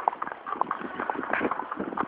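Horses' hooves clip-clopping on an asphalt street: a quick, irregular run of sharp hoof strikes.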